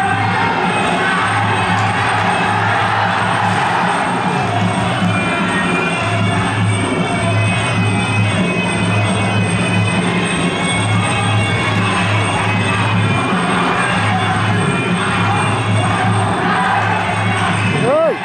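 Traditional Khmer boxing fight music playing through the bout: a sustained reedy melody over a repeating low drum pattern, with crowd voices and shouts beneath.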